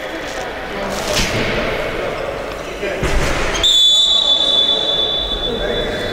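Sports-hall noise with a ball thudding on the court about a second in and again around three seconds. Past the halfway point comes a long, steady, high-pitched whistle blast, held for over two seconds.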